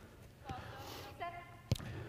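A soccer ball kicked in a pass on artificial turf: one sharp thud about three-quarters of the way in, after a lighter touch early on. Faint players' voices call before the kick.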